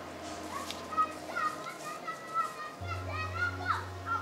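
Children's voices calling and shouting at play, high-pitched and lively from about a second in, over a steady background music drone.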